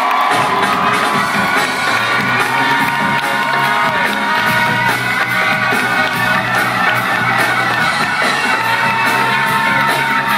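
Live rock/soul band playing a song, with bass and drums coming in just after the start and a steady beat from then on, and a crowd cheering over the music.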